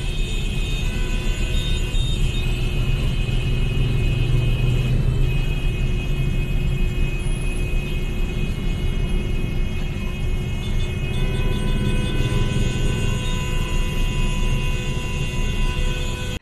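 Idling motorcycle engines and road traffic in a crowded queue, with a steady, heavy low rumble.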